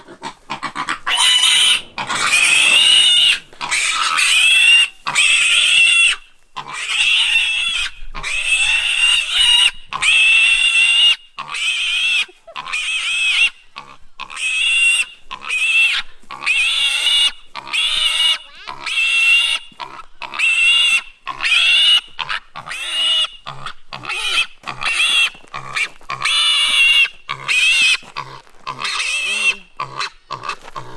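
A young feral piglet gives distress squeals while it is carried in someone's arms. The squeals are high-pitched and loud, and come one after another with short breaks between. In the last third they become shorter and quicker.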